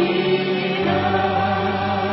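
Worship song sung by a vocal ensemble with a string orchestra, on long held notes.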